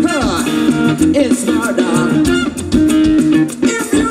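Live funk band playing, with electric guitar and singing in the mix. Right at the start a note slides steeply downward in pitch.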